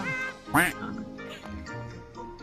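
Background music with a single short duck-quack sound effect about half a second in, the loudest thing heard.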